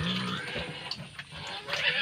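Domestic pig grunting, a short pitched call right at the start and more sound again near the end.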